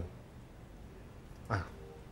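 A pause in dialogue: faint room tone, then a man's short, falling 'ah' about one and a half seconds in. A faint steady musical tone enters near the end.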